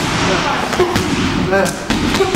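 Punches landing on a handheld strike shield: a few sharp smacks, one at the start and two near the end.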